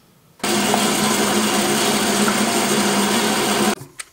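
Electric power tool motor running at a steady speed for about three seconds, starting and stopping abruptly.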